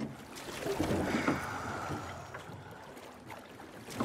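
Oars of a rowboat pulling through the sea, with a rush of water about a second in that fades away and another stroke's rush beginning near the end.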